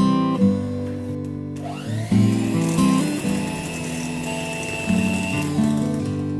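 Acoustic guitar background music throughout. From about one and a half seconds in, an electric hand mixer runs over it, its whine rising as it spins up, then holding steady until it stops shortly before the end.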